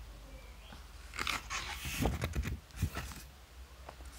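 A photobook page being turned by hand. Paper slides and rustles for about two seconds starting about a second in, with a couple of soft knocks as the page is laid flat.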